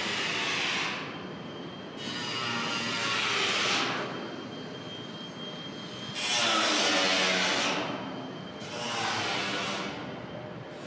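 Road traffic: four vehicles pass one after another, each a whoosh that swells and fades over a second or two. The loudest comes about six seconds in.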